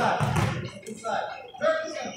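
Indistinct chatter of spectators in a gym, with a short snatch of a voice near the end.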